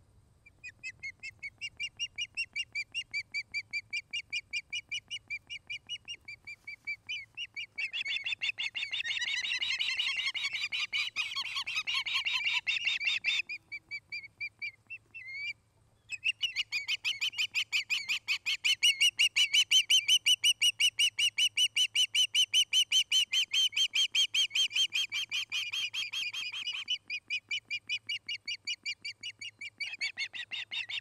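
Ospreys calling: long series of rapid, high-pitched chirping whistles, about four a second. The calls are louder and fuller for a few seconds before the middle, break off briefly near the halfway point, then resume louder for most of the second half.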